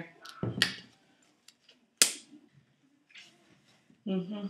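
A plastic ketchup squeeze bottle being handled: a knock just under a second in, then a single sharp click about two seconds in as its flip-top cap is snapped open.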